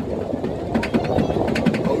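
Steel Dragon 2000 roller coaster train climbing the chain lift hill: a steady low rumble with rapid clicking from the lift's anti-rollback ratchet, several clicks a second.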